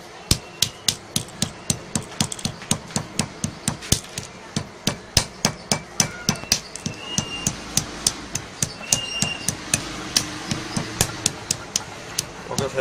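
Pestle pounding dry ginseng roots in a heavy stone mortar: sharp, evenly paced knocks, about three a second, as the roots are crushed.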